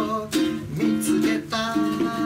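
Ukulele strummed in a jazz style under a man's singing voice, with a long held sung note starting near the end.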